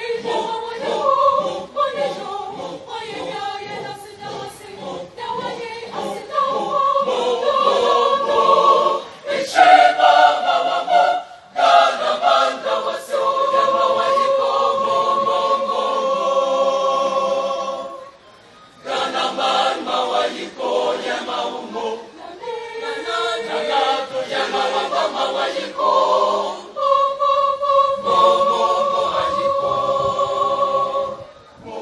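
Large school choir of boys and girls singing together, with long held notes and a short break in the singing about two-thirds of the way through.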